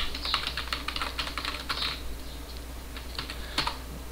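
Computer keyboard typing: a quick run of keystrokes that thins out in the second half, then a single key press shortly before the end.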